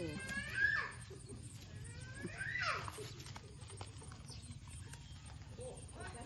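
An animal calling twice, two short loud cries about two seconds apart, each falling in pitch, over a steady low background hum.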